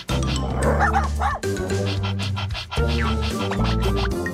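Cheerful background music, with an animated cartoon dog barking in the first second or so.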